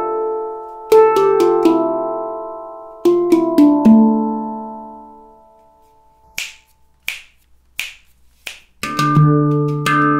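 Victor Levinson handpan played by hand. Three four-note melody phrases, each struck left-right-left-right, ring out and fade. Then come four evenly spaced sharp clicks, and near the end a groove starts on the low D ding note with quick taps.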